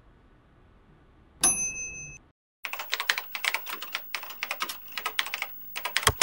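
Computer keyboard typing: a fast run of keystrokes starting about two and a half seconds in. Before it, about a second and a half in, a sharp hit with a short high ring, followed by a cut to dead silence.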